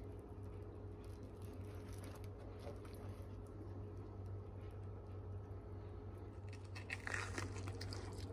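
A bite into a griddle-toasted grilled sandwich about seven seconds in, a short burst of crunching from the crisp bread, over a faint steady low hum.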